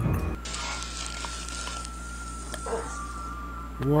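Episode soundtrack playing quietly: a soft, even hiss that stops about three seconds in, over a held high tone and a low hum.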